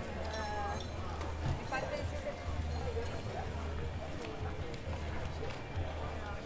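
Several café patrons talking at once, overlapping chatter of many voices.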